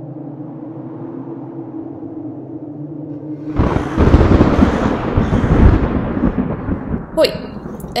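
A steady low droning tone with a few held notes, cut off about three and a half seconds in by a sudden loud, rough rumbling noise that lasts a few seconds and fades before a short spoken word near the end.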